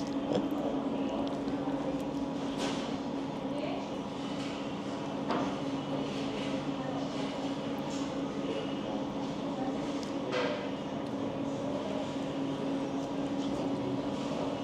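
Restaurant dining-room ambience: a steady mechanical hum with faint background chatter and a few short clicks, three times, as she eats.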